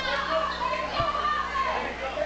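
Crowd of spectators in a hall talking and calling out over one another, children's voices among them, with one soft thump about halfway through.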